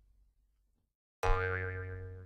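Silence for about a second, then a cartoon "boing" sound effect starts suddenly, its pitch wobbling upward as it fades away.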